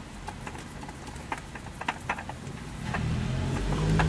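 A run of light, irregular clicks and knocks from hand work at the oil filter under a Hyundai Porter 2 truck. A low steady hum comes in about three seconds in.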